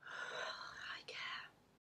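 A woman whispering, in two breathy phrases with a short break about a second in; the sound cuts off abruptly near the end.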